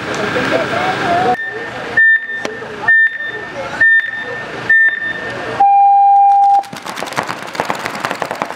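Electronic game-start countdown: four short high beeps a little under a second apart, then one long lower tone of about a second. Right after it, paintball markers fire rapidly as the point begins.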